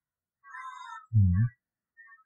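A faint, high-pitched call about half a second in, then a short, low hum from a man's voice whose pitch dips and rises again.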